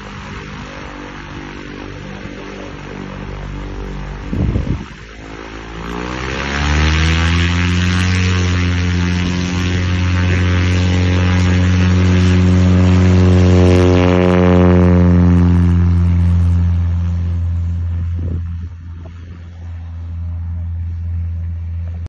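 Light airplane's Continental IO-370 engine turning a Hartzell Trailblazer propeller, running at low power, with a brief bump about four seconds in. About six seconds in it rises in pitch to full takeoff power, a loud steady drone for ten seconds as the plane takes off, then fades as it climbs away.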